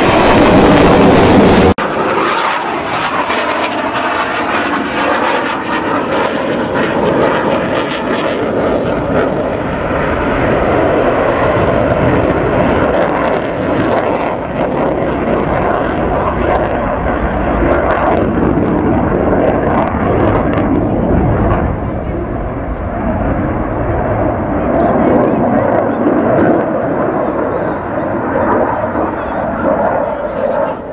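Loud jet noise from a Dassault Rafale fighter's engines flying a display. A very loud burst cuts off abruptly about two seconds in, then the rushing jet noise carries on steadily with slow swells as the aircraft manoeuvres.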